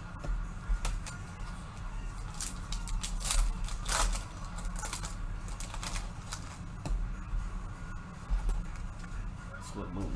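Foil wrapper of an Upper Deck hockey card pack crinkling and tearing as it is ripped open by hand, then cards being handled, in irregular rustles and sharp clicks over a steady low hum.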